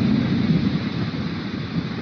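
Wind buffeting the microphone over surf breaking on a beach: a steady low rushing noise that eases slightly near the end.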